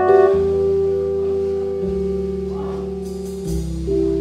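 Live band playing a soft, sustained passage: held keyboard chords and electric guitar over an electric bass that moves to a new note about every one and a half seconds.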